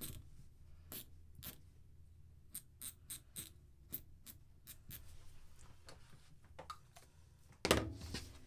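Short scratching strokes of a chalk marker drawing a letter on knit fabric, then a louder knock near the end as the chalk is set down on the table.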